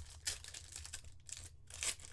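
Foil trading-card pack being torn open and crinkled by hand: a run of short crackles, the loudest near the end.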